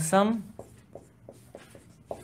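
Marker pen writing on a whiteboard: a run of short, faint strokes as a word is written by hand.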